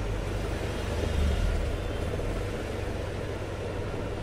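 Steady low hum of a replacement 15-volt air-conditioner fan motor running off its repaired control board, a sign that the board now works and the motor error is cleared.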